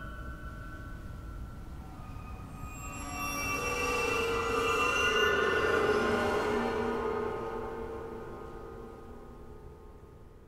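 Chordeograph: a field of piano strings set vibrating by a bar drawn across them, giving a dense, sustained drone of many pitches with shrill high overtones. It swells from about three seconds in, is loudest midway, and fades away toward the end.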